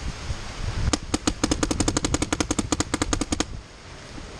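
A paintball marker firing a fast string of about thirty shots, roughly twelve a second. The string starts about a second in and stops abruptly after about two and a half seconds.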